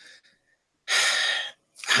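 A person's loud breath: a breathy hiss lasting under a second, about a second in, just before speech resumes.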